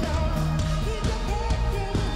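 Live pop band playing: a woman singing over drums and keyboards, with a steady beat.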